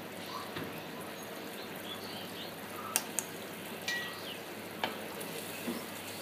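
Pangas fish curry simmering in a pan, a steady low sizzle and bubbling of the gravy. A few sharp clicks come around the middle.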